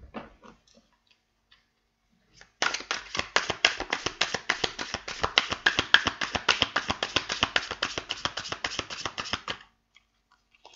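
A deck of tarot cards shuffled by hand: a fast, even run of crisp card-on-card clicks, about eight to ten a second, starting about two and a half seconds in and stopping shortly before the end.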